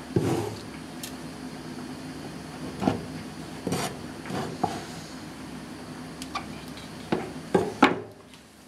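Irregular knocks and clacks of a kitchen knife and cut bracken fern stems on a wooden cutting board and against a plastic tub, with the loudest knocks right at the start and a quick cluster near the end as the knife is set down, over a low steady hum.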